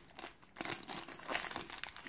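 Small clear plastic bag of metal screws and nuts being handled and opened, with the plastic crinkling in short, irregular rustles.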